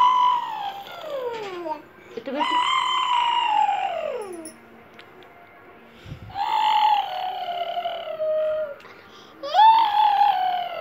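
A young child's long, high-pitched vocal calls, each sliding down in pitch over about two seconds, repeated about four times with short gaps.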